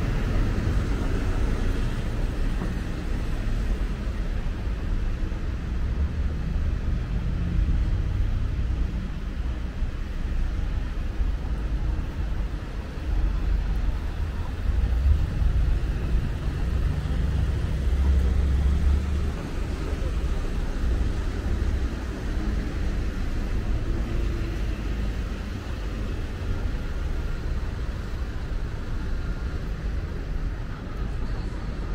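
City street traffic: a steady low rumble of passing vehicles that swells for a few seconds midway.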